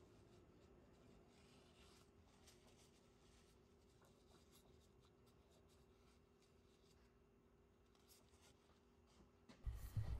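Near silence, with faint rubbing and a few light clicks from hands handling the steel parts of an air compressor discharge valve.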